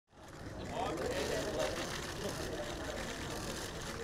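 Indistinct voices talking over a steady background hum of outdoor noise.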